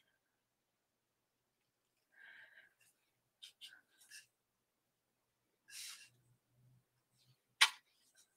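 Mostly quiet, with a few faint clicks and soft rustles and one sharp click near the end.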